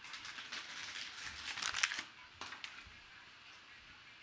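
Foil trading-card pack crinkling as it is torn and worked open, the cards pulled out; loudest about halfway through, then a single click.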